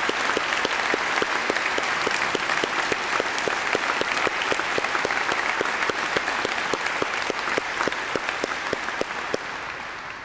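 Audience applauding, with one clapper's claps standing out above the rest at about three a second. The applause starts to fade near the end.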